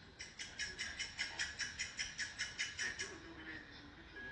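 A quick, even series of sharp clicks, about five a second, for about three seconds, then a faint low tone sliding slowly down near the end.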